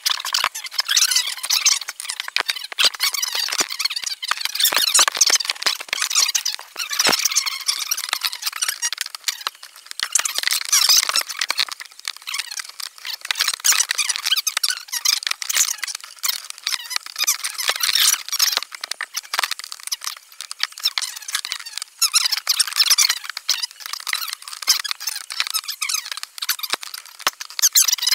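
High-pitched, squeaky chatter with no low end, typical of table talk played back sped up. The voices come out too high and fast to make out words.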